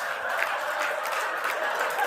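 Audience laughing and applauding at a joke: a steady wash of laughter with scattered hand claps.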